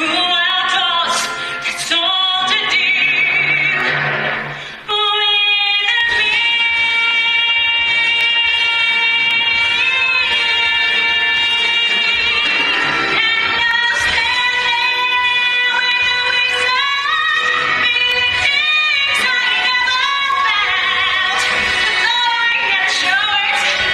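A woman singing a musical-theatre solo with orchestral accompaniment, belting and holding long notes with vibrato, with a short break about five seconds in.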